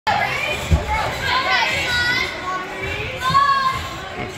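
Many girls' voices chattering and calling over one another in a large hall, with a single low thud about three-quarters of a second in.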